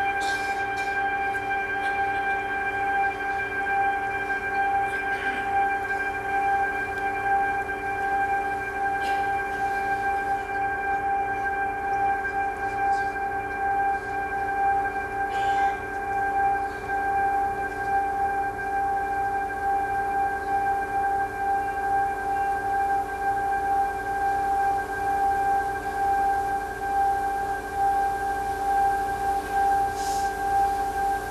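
A steady, unchanging musical drone: one high held tone over lower held tones, with a few faint clicks.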